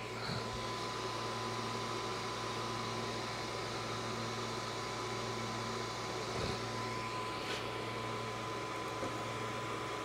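A fan running with a steady low hum, a constant faint high whine and a light hiss. A couple of faint taps come about six and a half and seven and a half seconds in.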